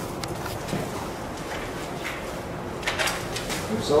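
Steady background hiss with a few faint, short scuffs, the clearest about three seconds in.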